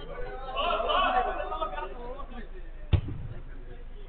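Players' voices calling and chattering across a five-a-side football pitch, with one sharp thud of a football impact about three seconds in.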